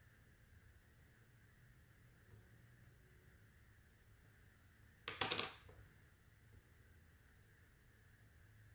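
Faint steady room noise, broken about five seconds in by one short clatter of a small hard object being put down on the wargaming table.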